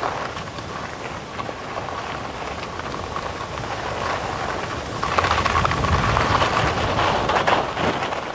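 Skis carving over packed snow with a continuous scraping hiss, mixed with wind rumbling on the helmet-mounted camera's microphone. It grows louder and rougher about five seconds in.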